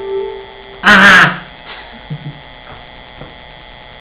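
The last sustained chord of an electronic keyboard fades out. About a second in comes a short, loud burst of noise lasting about half a second, then only a low steady hum with a few faint soft knocks.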